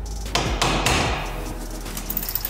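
Hammer blows striking a ratchet on an 18 mm socket to break loose a front brake caliper bolt: two sharp metallic strikes about half a second apart.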